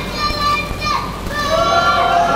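A man's voice singing long, held notes of a sung recitation through a microphone and loudspeakers, the first note sliding down and breaking off about halfway before a second long note begins.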